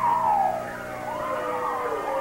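A person howling: one long wavering call that falls in pitch, rises again about a second in, and trails off.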